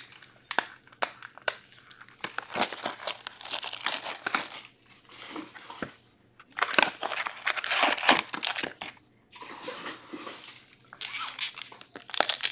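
Crinkling and tearing of card-box packaging as a sealed hobby box of hockey cards is opened and a foil card pack is taken out, in three bursts of crackling with short pauses between.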